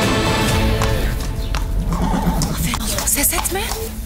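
Soundtrack music fading out in the first second, then a horse's hooves clip-clopping and a horse whinnying briefly near the end.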